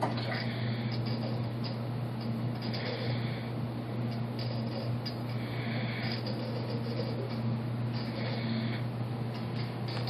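Aquarium filter running: a steady low electrical hum with a constant watery hiss over it.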